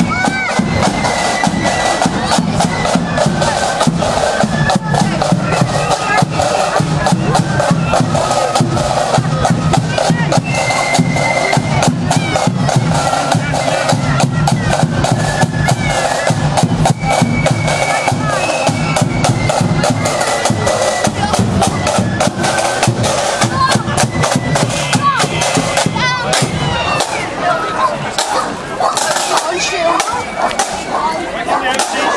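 A marching flute band playing a march as it parades along the street: a steady beat of snare and bass drums with flutes above, over crowd chatter.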